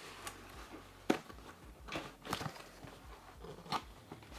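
Small cardboard box being opened by hand: a few sharp snaps and crackles as the taped flaps are pried and pulled apart, the loudest about a second in.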